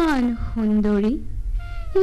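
A woman's voice calling out in long, drawn-out phrases that glide down in pitch, with a low hum underneath.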